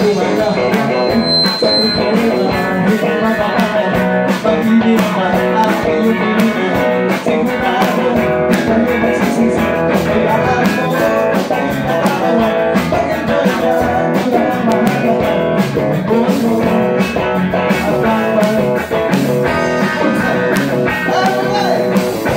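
Live rock band playing loud and steady: electric guitars over a drum kit, in a blues-rock style.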